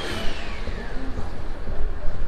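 Town street ambience with a steady low rumble, and a high whine that falls in pitch over the first second, like a small vehicle's motor winding down.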